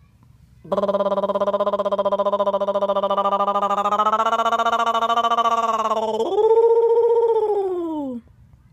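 A strange pitched tone, held at one low steady pitch with a fast flutter for about five seconds, then jumping higher and gliding down as it fades.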